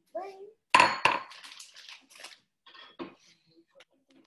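Metal kitchenware clattering: a sharp clang about a second in that rings briefly, then a run of lighter clinks and rattles.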